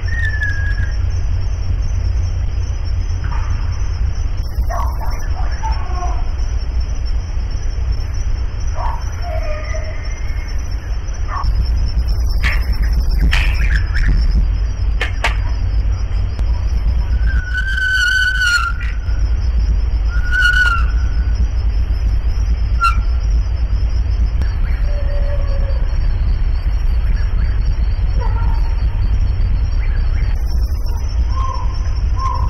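Night woodland audio from an unattended recorder. A loud, steady low rumble and a constant high hum run under scattered short pitched calls, the two loudest about two-thirds of the way through. The calls are unidentified; they sound like nothing the narrator has heard before.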